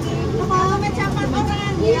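Several people talking over one another in a crowded eatery, over a steady low hum.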